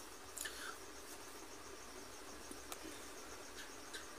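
An insect chirping faintly and steadily in a quiet room, a high-pitched sound that pulses rapidly, with a couple of soft ticks.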